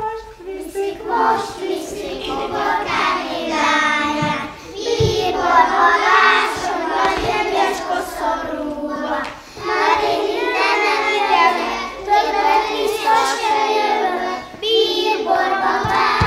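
A group of young children singing a song together, with a few sharp knocks partway through and near the end.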